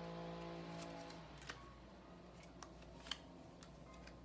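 Faint handling of a tarot deck: a few soft, separate clicks of cards as the deck is cut and cards are drawn. A held background-music note fades out about a second in.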